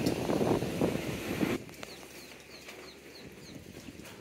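Low noise of wind on the microphone, cutting off abruptly about a second and a half in, followed by a small bird calling a quick run of about six short, high, falling chirps.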